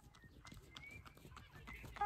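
Faint, irregular hoofbeats of a horse cantering on grass.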